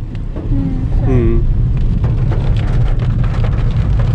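Inside a car's cabin while driving on a wet road: a steady low rumble of engine and tyres, with rain pattering on the roof and windscreen as fine, fast ticks.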